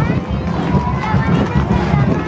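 Band music with a steady, loud low bass line, mixed with the voices of a crowd.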